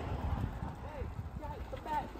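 Footsteps on brick paving, people walking at a steady pace, faint under a quiet street background.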